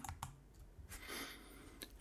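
A few faint, short clicks, some just after the start and one near the end, as the terminal window is closed.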